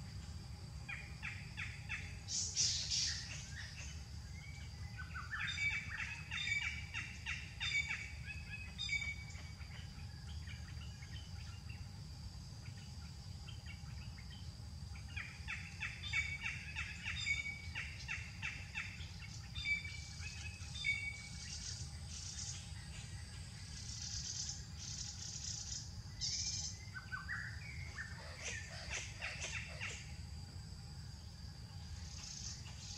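Short high chirping calls repeated rapidly in three bursts of several seconds each, with a rising run of notes near the end, over a steady high-pitched drone.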